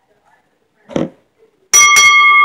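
A short noise about a second in, then a wrestling ring bell struck twice in quick succession near the end and left ringing: the bell that starts the match.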